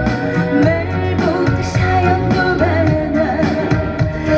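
A woman singing a Korean trot song live into a handheld microphone, her voice gliding and bending over a loud accompaniment with a steady bass line and drums.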